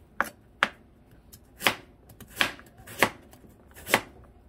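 Kitchen knife slicing a Korean radish (mu) into thin slices on a plastic cutting board. There are six sharp cuts at uneven intervals.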